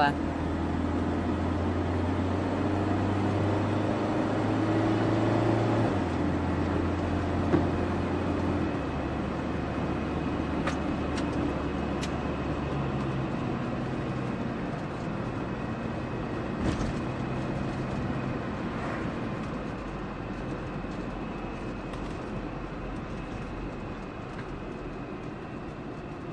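Car engine and tyre noise heard from inside the cabin as the car accelerates. The engine note drops in steps at each gear change, then the car settles into cruising and eases off.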